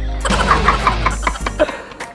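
A man and an elderly woman laughing hard together in quick bursts, trailing off near the end, over background music.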